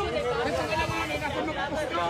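Voices of several people talking at once, an indistinct chatter.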